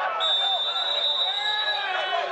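Referee's whistle blown in one long, steady, high blast of about a second and a half, stopping play. Players' voices shouting on the pitch go on beneath it.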